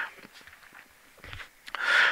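A pause between spoken sentences: near silence, then a faint breath drawn in near the end before speaking resumes.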